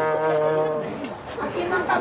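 A brass band holds a last chord over a low brass note, which fades out about a second in and gives way to crowd chatter.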